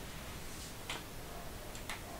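Two faint clicks about a second apart over a low, steady hiss.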